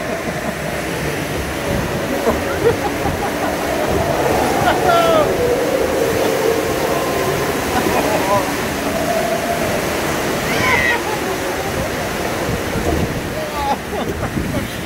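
Whitewater rushing around a rapids-ride raft: a loud, steady rush of water, with riders' voices calling out over it now and then.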